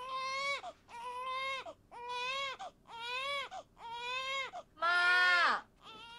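Newborn baby crying: six wails in a steady rhythm about a second apart, each dropping in pitch at the end, the last one loudest. The family believes the crying may be hunger because the mother has too little milk.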